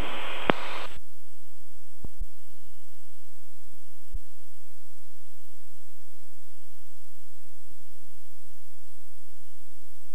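Cirrus SR20's piston engine and propeller droning steadily in the cockpit during cruise flight, a low, even hum with no change in pitch.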